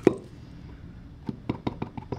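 Small hard taps and clicks from a clear acrylic stamp block and ink pad being handled on a tabletop: one sharper knock just after the start, then a quick run of light taps in the second half, as the stamp is dabbed on the pad to ink it.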